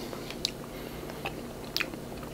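A person chewing a mouthful of soft strawberry Melona ice cream bar with the mouth closed, with a few faint wet mouth clicks.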